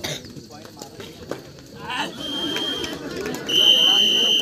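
Referee's whistle blown twice over crowd chatter and shouts: a short blast about two seconds in, then a longer, louder blast near the end.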